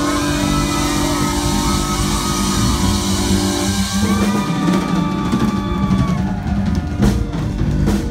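Live Tejano band playing an instrumental passage: accordion melody over a drum kit, bass and guitar.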